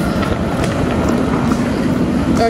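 Electric inflatable blower running steadily, a constant rushing fan noise with a low hum, as it inflates a bounce house.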